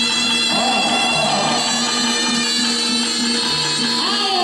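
Jaranan Thek gamelan music: a shrill, shawm-like reed trumpet (slompret) holds steady notes, one sliding note about half a second in, over a low note repeated in short, even pulses.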